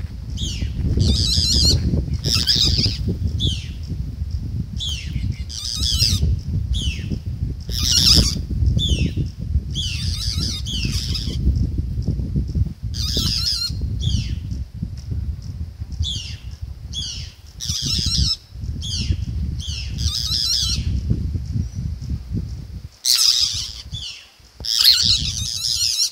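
A bird calling over and over at a cat in the tree: bursts of short notes that fall in pitch, about one a second, with a pause near the end.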